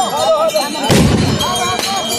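Gunshots from the festival procession's long guns, two sharp reports about a second in and just before the end, over a crowd of men's voices shouting and calling.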